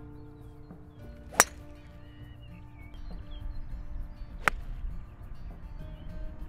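Two golf shots, the club head striking the ball with a sharp crack, once about a second and a half in and again about three seconds later. The first is a driver off the tee.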